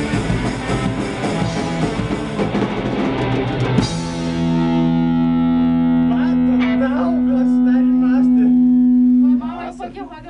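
Hardcore punk band playing with distorted electric guitars, bass and drum kit, ending the song on a final hit about four seconds in. A distorted chord is then left ringing as one steady held tone for about five seconds and cut off shortly before the end, with voices starting to talk over it.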